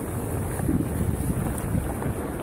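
Wind buffeting an action camera's microphone as a mountain bike rolls fast down a dirt trail: a steady, loud low rumble mixed with tyre noise on the dirt.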